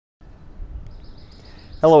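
Steady low outdoor background noise begins after a brief moment of dead silence. About a second in, a small bird gives a quick series of high chirps, under a second long, just before a man says "Hello".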